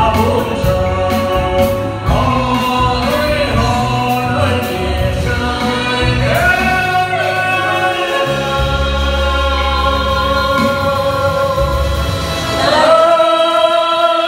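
A man and a woman singing a duet into microphones over a live band with drums and bass guitar. Near the end the voices glide up into a louder long held note as the bass and drums drop away.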